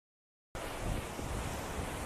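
Wind buffeting the microphone, with a low fluctuating rumble, over the steady wash of ocean surf, starting about half a second in.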